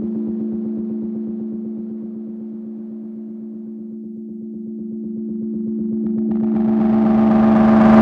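Instrumental electronic music: a sustained synth drone on one low note, chopped into a fast even pulse. It dips a little, then swells louder and brighter over the last few seconds.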